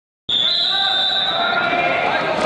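A referee's whistle blown in one steady blast of about a second, signalling the start of the wrestling bout, with voices in a large echoing hall behind it.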